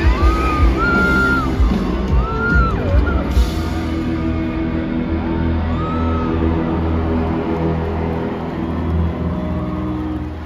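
Live rock band playing loud, with a heavy steady beat and voices carrying over the music in the first few seconds.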